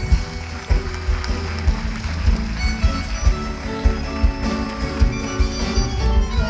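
Live tango ensemble music led by a bandoneon, an instrumental passage with a low pulsing bass underneath.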